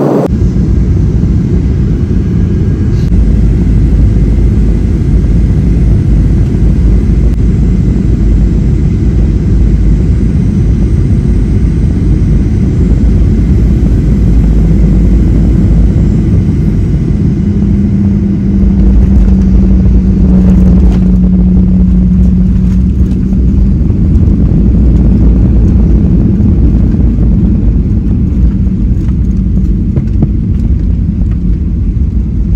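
Jet airliner cabin noise during landing: a loud, steady rumble of engines and airflow heard from inside the cabin as the plane comes down and rolls along the runway. A little past halfway a steady hum rises above the rumble and holds for several seconds before easing.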